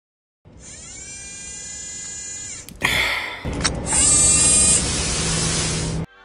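Added sound effects: a buzzy electronic whine slowly rising in pitch as it charges up for about two seconds, then a sudden loud blast about three seconds in, followed by a sustained noisy explosion rush.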